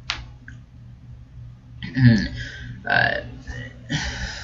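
A man's throat-clearing noises: a sharp click right at the start, then two short low vocal grunts about two and three seconds in.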